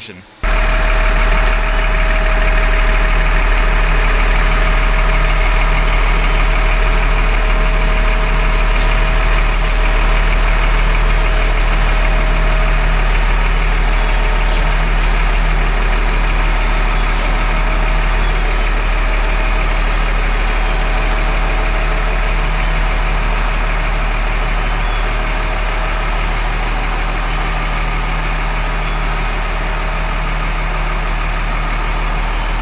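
LMTV military truck's diesel engine running steadily, growing slightly fainter as the truck pulls out through the shop door.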